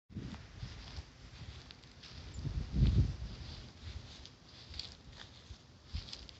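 Footsteps through grass, with wind buffeting the microphone in uneven low rumbles that peak about three seconds in.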